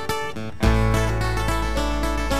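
Live band playing an instrumental passage: acoustic guitar strumming and picked guitar notes over upright bass, with a new deep bass note coming in about two-thirds of a second in.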